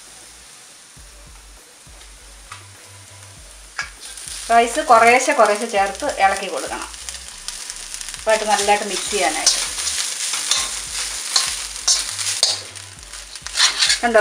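A metal spoon stirring and scraping grated beetroot, then cooked rice, around a hot steel wok, with a faint sizzle of frying. It is quiet for the first few seconds, and the scraping strokes grow louder later on as the rice is mixed in.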